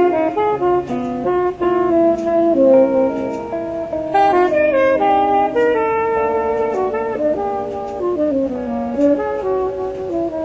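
Live jazz: saxophones play moving melodic lines together over electric guitar and drums.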